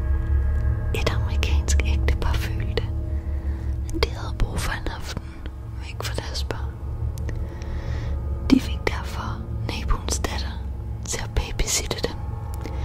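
Whispered speech in Danish, in breathy phrases every second or so, over a low, steady droning music bed.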